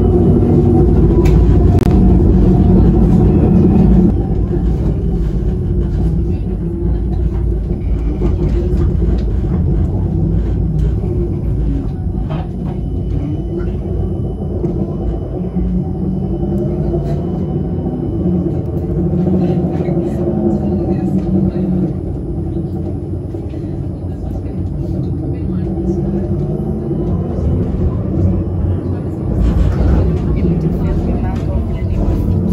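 A tram running, with a steady low rumble and a motor tone that slowly rises and falls; voices can be heard.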